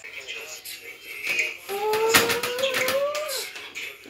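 A child's voice holding one long, slowly rising note for under two seconds, starting about halfway through, with a few light clicks near its middle.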